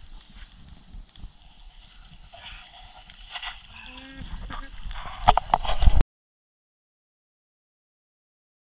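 Forest sound with a steady high-pitched insect drone over low rumble and scattered knocks and rustles. The loudest thumps come near the end, just before the sound cuts off suddenly to silence about six seconds in.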